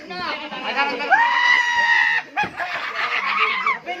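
Excited shouting voices, with one high-pitched squeal held at a steady pitch for about a second, starting about a second in, from young men roughhousing.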